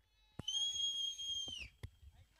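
A shrill whistle: one steady high note lasting just over a second, dropping in pitch as it ends, followed by a single sharp click.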